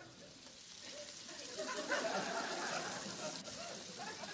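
Dandelion greens sizzling steadily with pancetta and garlic in a sauté pan. Many overlapping voices from a studio audience rise about a second and a half in and fade again.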